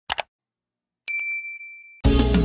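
Mouse-click sound effect, a quick double click, then about a second later a single bright notification-style ding that rings and fades over about a second.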